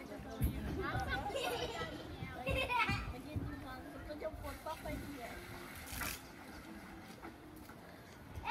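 Women and children talking and calling out, several voices overlapping in the first three seconds, then scattered, quieter talk, with a couple of sharp knocks.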